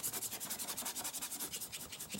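Stiff paintbrush scrubbing oil paint across a palette sheet: a soft, scratchy rubbing hiss with a fast, even flutter.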